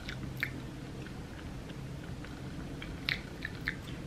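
Quiet sipping of a thick milkshake through a wide reusable straw, with a few faint mouth clicks, two near the start and three near the end. The shake is hecka thick and hard to draw through the straw.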